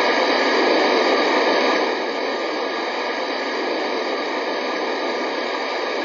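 Steady static hiss with no beat or tone, dropping slightly in level about two seconds in.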